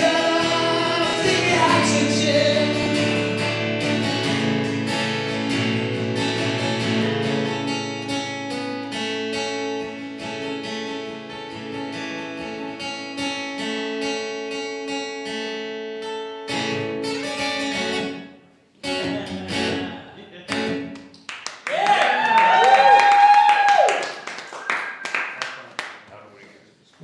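Live guitar and singing: held, strummed guitar chords under a voice that fade out over the first sixteen seconds or so as the song ends. Scattered guitar notes follow, then a brief loud voice-like call with bending pitch near the end.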